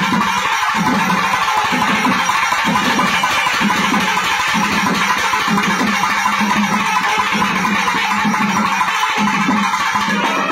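Nadaswaram ensemble playing loudly in a reedy, continuous line, with thavil drums beating a steady rhythm underneath.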